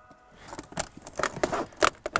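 A case being opened by hand: a quick run of clicks, scrapes and rustles starting about half a second in, the sharpest one near the end.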